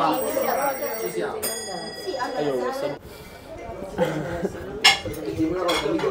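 Diners' chatter in a restaurant, with a ringing clink of tableware in the first two seconds or so and a single sharp tap near the end.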